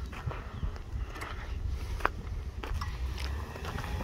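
Snow crunching in quick, irregular crackles over a low, steady rumble.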